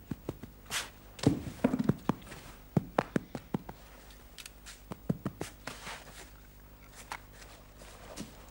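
Irregular knocks, clicks and short scraping hisses of hands digging and scraping in sand.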